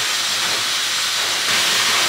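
Handheld hair dryer running steadily as wet hair is rough-dried, an even rush of air; it gets a little louder and brighter about one and a half seconds in.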